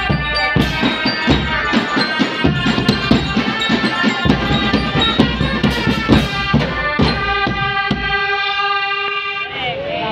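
School drum band playing: bass drums, snare and tenor drums and cymbals beating a fast rhythm under steady melody notes. About eight seconds in the drumming stops and a held chord rings on.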